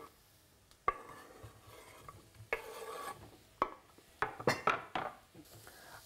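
A wooden spoon stirring and scraping vegetables around a pot, with sharp knocks of spoon and food against the pot: one about a second in and a quick cluster near the end.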